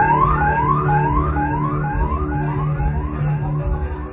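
Dub sound-system music with a heavy bass line and a dub siren effect: a rising whoop that repeats about twice a second and gradually fades away. The bass drops out at the very end.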